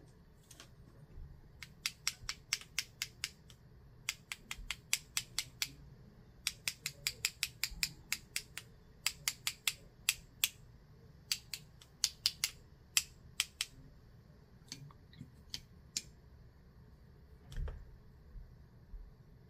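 Two paintbrushes tapped together to flick watercolour spatter onto the paper: runs of sharp clicks, about five a second, in bursts of several taps with short pauses between. Near the end there is a single dull thump.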